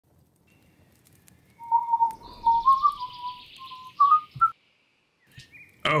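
Birdsong: a string of short chirping notes that step up in pitch, with a fainter, higher call before and after.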